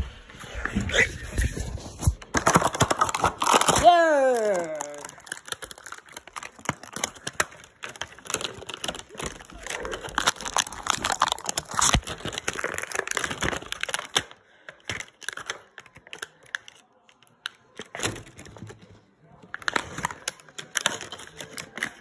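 Plastic and cardboard toy packaging crinkling and crackling as it is handled and torn open, with many sharp crackles close to the microphone. About four seconds in, a voice slides down in pitch.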